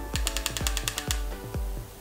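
Smok Devilkin vape mod's fire button pressed five times in quick succession to switch the mod on, giving a rapid run of about ten sharp clicks in about a second. Background music with a steady beat plays under it.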